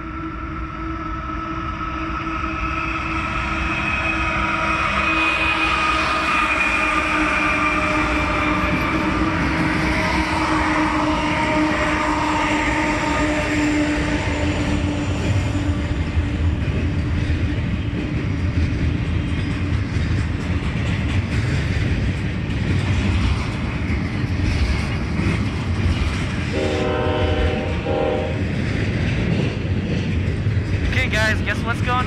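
Double-stack container freight train passing close by. The diesel locomotive's horn sounds a long chord that falls slightly in pitch as it goes by, and the train's rumble builds over the first few seconds. The rolling wagons then keep up a steady rumble and rail clatter, with two brief tones near the end.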